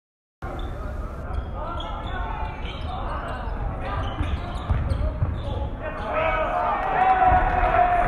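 A basketball being dribbled on a hardwood court during a game, the bounces repeating over the chatter of players and spectators echoing in the gym. A voice calls out louder and longer near the end.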